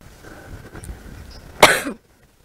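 A single short, loud cough about a second and a half in, over low background noise.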